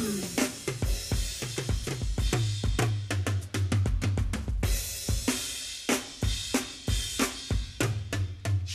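Rock drum kit playing an instrumental passage in a live band performance: snare, bass drum and cymbals, with a fast flurry of strokes about three seconds in, over low sustained notes from the band.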